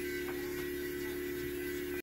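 Electric podiatry nail drill running at a steady speed on a toenail, a constant even hum with no change in pitch.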